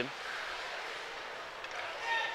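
Ice hockey rink ambience during live play: a steady, even hiss of skates on the ice and arena background, with no distinct puck or board impacts.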